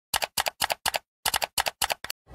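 Typing sound effect for an intro title: seven keystrokes, each a quick double click, in a fast even rhythm with a short pause after the fourth.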